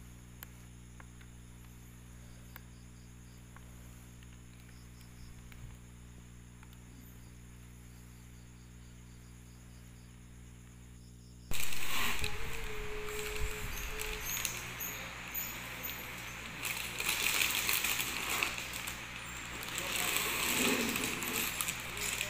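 Quiet room tone with a steady low electrical hum, then, about halfway through, an abrupt switch to louder, uneven rustling and handling noise as the helmet and its plastic wrapping are moved about.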